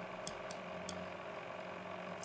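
A few faint, light clicks in the first second over a steady low electrical hum.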